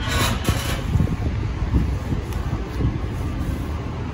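Outdoor background noise: a low, uneven rumble, with a brief rush of hiss in the first second.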